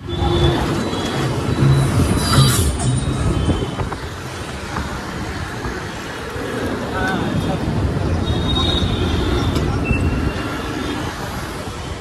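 Traffic noise heard from a moving motorcycle in city traffic: engine and road noise with a low, uneven rumble, and the surrounding auto-rickshaws and vehicles, a little louder in the first few seconds.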